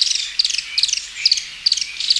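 Thorn-tailed rayadito singing: short, high-pitched, insect-like trilled phrases repeated about two or three times a second.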